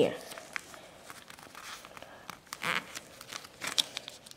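Origami paper rustling and crinkling as it is folded and creased by hand, in a few short rustles and small clicks.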